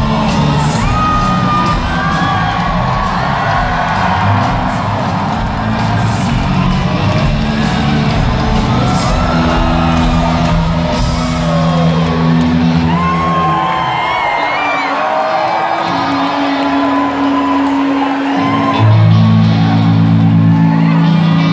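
Rock band playing live, heard through the crowd, with audience members whooping and cheering over the music. Past the middle the bass drops away for a few seconds, and the full band comes back in louder near the end.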